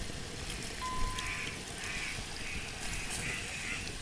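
A bird calling over and over, roughly twice a second, over a steady low hiss. A short, thin beep sounds about a second in.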